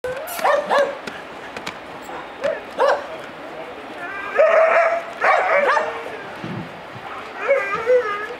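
Puppies yipping and barking as they play: a few short, high yips in the first three seconds, then longer drawn-out yelping calls around the middle and again near the end.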